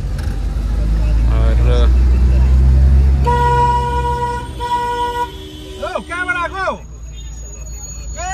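Vehicle horn honking twice, each honk under a second long, over the low rumble of a moving van's engine and road noise heard from inside the cabin.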